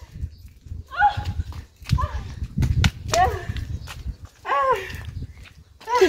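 A dog giving several short, high whining yelps, each rising and falling in pitch, over low thumping rumble from handling or wind on the microphone.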